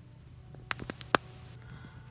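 Hard clear plastic crystal-puzzle pieces clicking against each other as one is pushed into another: four sharp clicks in quick succession about two-thirds of a second in, the last the loudest.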